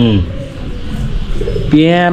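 A man's voice: a short falling vocal sound at the start and a drawn-out, rising-then-level one near the end, with a quieter pause between.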